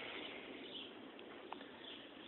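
Quiet outdoor background with no clear source, and one faint click about a second and a half in.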